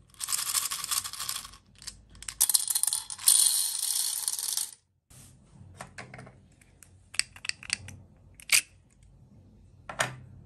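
Small round beads poured from a little plastic bottle into a metal muffin-tin cup: a dense rattling pour in two runs of a second or two each, then a few scattered light clicks as they are handled.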